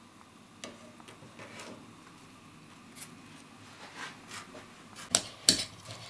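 Faint scraping and light clicking of a knife and fork against a mixing bowl as chopped herbs and avocado are pushed together and mashing begins, with a couple of sharper clicks about five seconds in.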